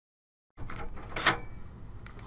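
Silent for about half a second, then a screwdriver working a screw out of a computer case's steel slot-cover bracket: faint scraping and handling noise with one sharp metallic click a little over a second in.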